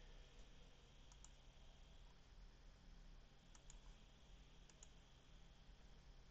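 Near silence with a few faint computer mouse clicks, coming in close pairs, over a low steady hum.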